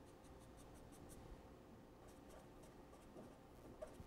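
Faint scratching of a felt-tip marker on paper, in quick runs of short strokes as hatch marks and letters are drawn.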